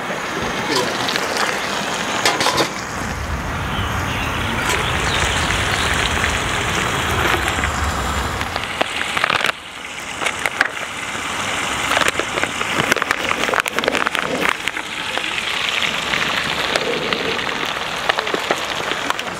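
Salmon fillets sizzling in butter on a hot propane skottle pan: a steady hiss with many small crackles and pops. A low rumble sits under it for several seconds in the first half.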